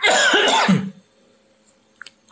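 A man coughing once, a loud burst lasting just under a second.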